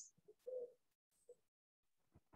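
Near silence, broken by two faint, brief tones: the first about half a second in, the second shorter, a little after one second.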